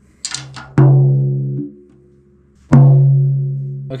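Drum with a coated Remo head struck twice in the center with a felt mallet, each stroke ringing with a low pitched note and its overtones. The first ring is cut short after under a second and the second rings out. The head's batter side has just been lowered, leaving the fundamental a little flat of C sharp with the overtone near G sharp, almost a perfect fifth above. A few light taps come just before the first stroke.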